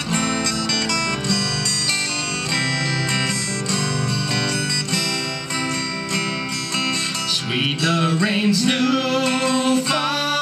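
Two acoustic guitars strumming the introduction of a hymn. Male singing comes in about three quarters of the way through.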